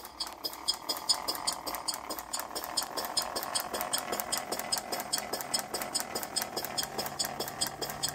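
A model Corliss steam engine built from castings running smoothly, with steady quick beats from its valve gear and exhaust at about six a second. A low steady hum joins in about halfway through.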